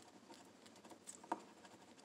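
Faint scratching of a metal scratcher coin on a scratch-off lottery ticket, a few short scrapes taking off the coating, the sharpest a little past one second in.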